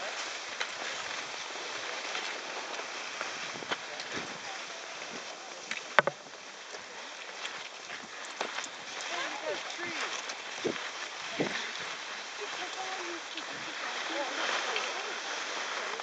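Steady swishing hiss of cross-country skis sliding and pushing on snow, with one sharp click about six seconds in.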